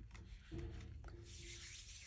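Faint rubbing and rustling of paper pages as hands handle and press a handmade junk journal.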